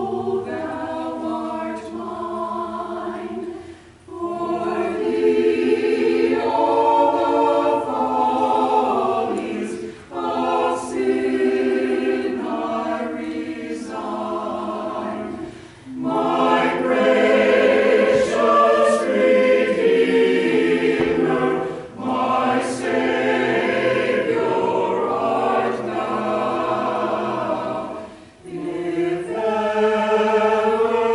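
Mixed church choir of men's and women's voices singing an anthem together, in phrases of about six seconds each with short breaks between them.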